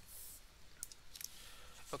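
Faint computer mouse clicks, a few in quick succession about a second in.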